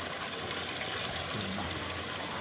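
Steady rush of water running through a corrugated hose into a borewell's steel casing pipe as the bore fills.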